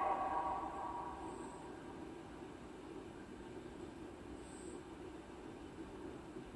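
Faint film-soundtrack background: a lingering musical note fades out over the first second or so, leaving a low, steady rushing noise.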